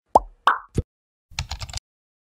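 Animated-logo sound effects: three quick pops with sliding pitch, followed by a short run of rapid clicks like keyboard typing.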